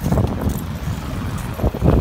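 Wind rumbling on the microphone of a camera moving along a city street, over traffic noise.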